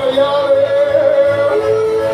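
Live folk band playing, with piano accordion and acoustic guitar; a long held note sounds over the band and steps down to a lower pitch about one and a half seconds in.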